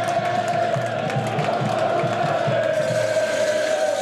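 Football crowd in the stands chanting and singing together, holding one long note over the general crowd noise.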